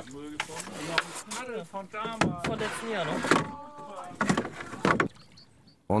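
A person talking, the words not clear, followed by a couple of short knocks near the end.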